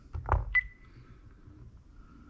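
Honeywell 6290W touchscreen alarm keypad giving one short, high beep about half a second in as its OK button is pressed to save a user code, after a soft handling sound.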